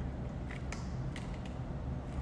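A drink being sipped through a plastic straw from a fast-food cup, with a few faint creaks and clicks of the straw and cup, over a steady low hum.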